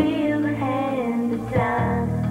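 A woman singing a song into a microphone over instrumental accompaniment.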